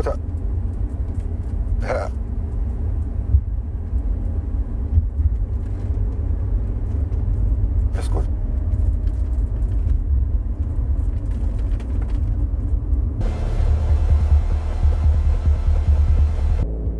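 Steady low rumble of a car driving, as heard inside the cabin, with a few brief sharp sounds over it. About three seconds before the end a harsher hissing noise joins in.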